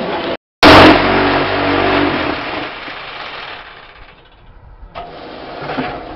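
A concrete block machine (QTJ4-40) running with a loud, steady rattling hum that starts abruptly after a brief dropout, then winds down and fades over about three seconds. Quieter clatter of the machine comes back near the end.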